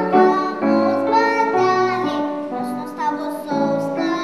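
A young girl singing solo with grand piano accompaniment, her voice carrying a run of held sung notes.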